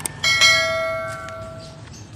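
A mouse-click sound effect followed by a bright bell 'ding' that rings out and fades over about a second and a half: the notification-bell sound of a subscribe-button animation.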